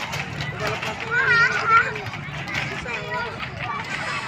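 Children's voices shouting and calling while they play, the loudest a child's high, wavering cry a little over a second in, over a busy outdoor background of other voices.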